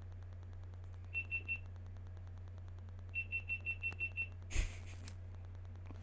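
Short, identical high electronic beeps from a GoPro Hero 9 camera being restarted after overheating: three quick beeps about a second in, then a run of seven a couple of seconds later. A brief knock of handling follows, over a steady low electrical hum.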